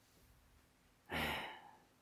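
A man sighing: one breathy exhale a little over a second in, lasting about half a second and trailing off.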